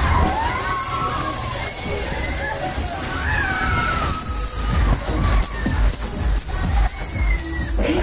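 Fairground waltzer in full spin: loud ride music with singing, riders shouting and cheering, over a constant low rumble.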